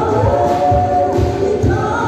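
Choral gospel-style singing with music, voices holding sustained notes over a steady low beat.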